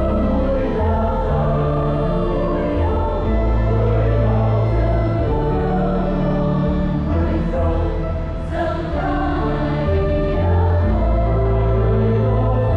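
Mixed choir of men and women singing a Vietnamese Catholic hymn together, over organ accompaniment holding long sustained bass notes.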